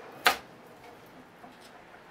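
A kitchen knife chops once through a carrot onto a wooden cutting board, a sharp knock about a quarter second in, followed by a few faint light knocks.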